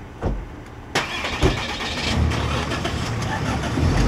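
An old Honda Civic hatchback's small engine is started about a second in and keeps running, growing gradually louder, after a short knock such as a car door shutting.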